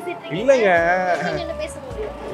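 A person's voice drawn out for about a second with a rapidly quavering pitch, over faint background music.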